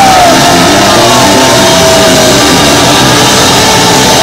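Live hard rock band playing loud, with electric guitar and drums.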